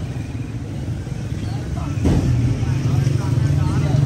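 A motor vehicle engine running close by, a steady low hum that grows louder about two seconds in, under faint background street chatter.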